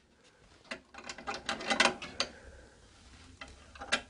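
Brass hasp and latch on a red lacquered wooden chest being handled: a quick run of light clicks for about a second and a half, then a few faint clicks and one more near the end.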